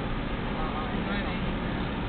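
Steady road and engine noise heard inside the cabin of a moving car, with a constant low rumble.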